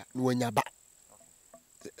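Crickets trilling in one steady high tone throughout, under a short spoken word near the start.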